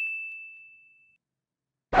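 A single high, bell-like ding sound effect, added in editing, rings out and fades away over about a second, followed by dead digital silence until a voice comes in at the very end.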